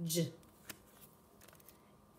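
A brief spoken syllable at the very start, then a few faint clicks and rustles of a stack of paper flashcards being handled and the top card flipped over.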